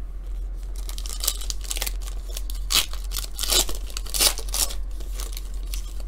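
A foil trading-card pack wrapper being torn open and crinkled, a run of crackling rips and rustles from about a second in until near the end.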